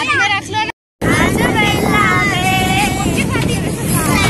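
Tractor engine running as it tows a crowded trolley along a road, a steady low rumble that comes in after a brief silent break about a second in, with several voices over it.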